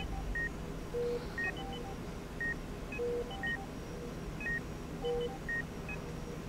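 Hospital medical equipment beeping: short electronic beeps at several different pitches, a lower longer beep among them, in a pattern that repeats about every two seconds over a faint low hum.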